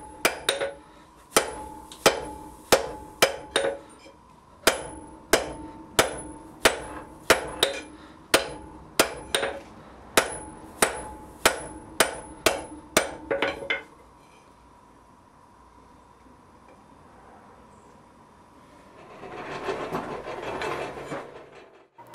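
Hand hammer striking a red-hot iron bar on an anvil, about two to three blows a second with the anvil ringing between them, while the hinge-area offset of a pair of bolt tongs is forged out. The hammering stops about two-thirds of the way in, and a rushing noise swells and fades near the end.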